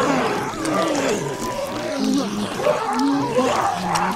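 Overlapping wordless growls and moans from voices, sounding one after another throughout.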